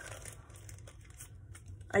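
Faint crinkling of a thin clear plastic baggie being handled as paper embellishment pieces are slipped into it.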